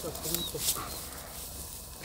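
A German Shepherd gives a short, high whine while heeling beside its handler in bite-work training, over low voices.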